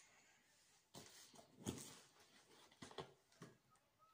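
Faint handling noises of a large plastic drink bottle being picked up and opened: a few short knocks and crackles of plastic, the loudest about one and a half seconds in.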